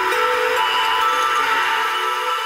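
Breakdown in an electronic breaks/jungle track: the drums and bass drop out, leaving a steady hissing noise wash over a few held synth tones.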